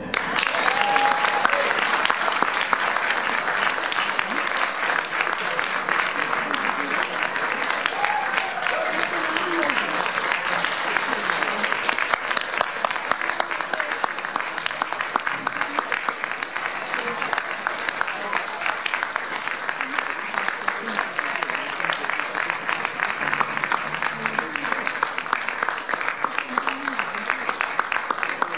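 Applause from a small audience breaking out suddenly and carrying on, with a few voices talking over the clapping.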